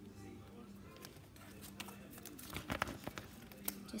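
Trading cards and their packets being handled: a string of soft clicks, taps and rustles through the middle, over a faint steady hum.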